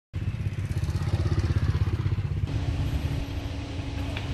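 A motor vehicle engine running close by: a low, rapidly pulsing rumble, loudest in the first two seconds. A steady hum joins about halfway through.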